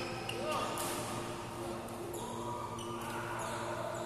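Badminton doubles rally in a large hall: sharp racket strikes on the shuttlecock every second or so and court shoes on the floor, over a steady hum and background voices from other courts.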